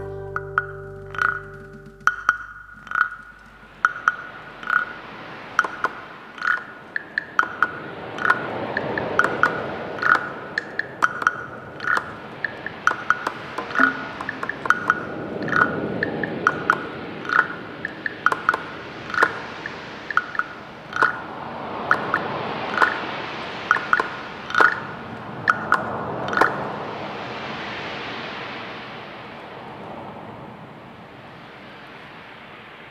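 Sharp percussion clicks with a ringing tone, struck about every two-thirds of a second, over a hiss that swells and fades several times; the clicks stop about four seconds before the end.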